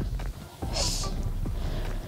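Wind rumbling on the microphone, with a brief hiss of a gust about a second in.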